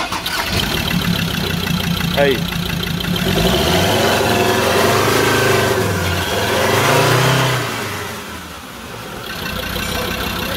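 Ford Ranger 3.2 five-cylinder diesel engine running with the hood open, first steady, then revved up and down, highest about seven seconds in before dropping back. The engine is pouring smoke and leaking oil, which the mechanic suspects comes from broken piston rings or the turbo.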